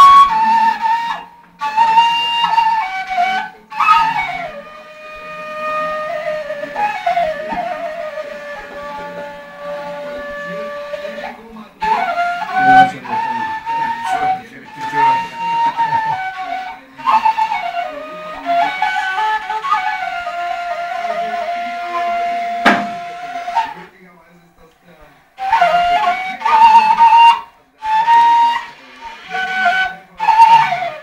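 A long wooden flute playing a slow folk melody in phrases, with long held notes, ornamented turns between them and short breaths between phrases. There is a single sharp click about three-quarters of the way through.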